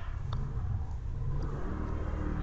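A low, steady rumble with a faint click about a third of a second in.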